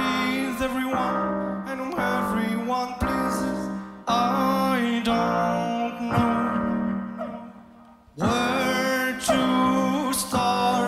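Loop station music built from layered vocal loops on a Boss loop station: a held low note under melodic, sung-sounding phrases that come in about once a second. It fades about seven seconds in, then comes back in full just after eight seconds.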